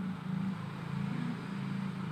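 A steady low hum with a faint hiss underneath.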